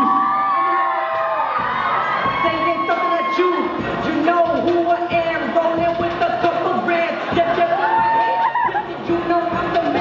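Hip-hop backing track with a beat and held synth tones, under a young crowd cheering and shouting in a hall.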